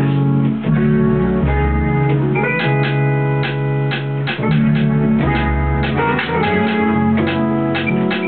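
A live electronic keyboard plays held chords over a programmed house beat coming from studio speakers, with a deep bass line and steady drum hits.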